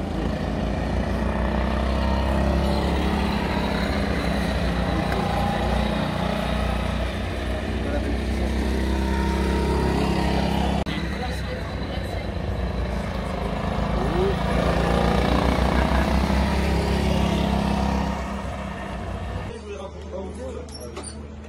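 Go-kart engines running on the circuit: a steady, loud drone, with faint rises and falls in pitch as the karts accelerate and pass.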